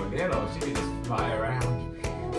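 Upbeat acoustic guitar background music with a steady rhythm, with a small child's voice squealing or babbling over it twice.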